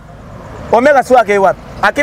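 A man speaking animatedly in French. After a brief pause at the start, where only low outdoor background noise is heard, he talks in two quick phrases.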